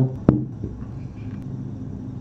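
Room background in a pause between words: a single sharp click just after the start, then a steady low hum over faint noise.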